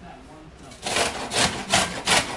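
Horseradish root being grated on a metal box grater: repeated rasping strokes, about three a second, starting just under a second in.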